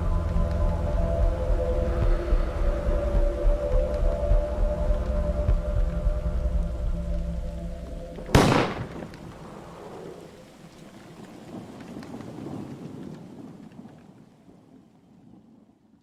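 A low droning chord of held tones, cut off about halfway through by a single loud thunderclap, followed by thunder and rain noise that fades away.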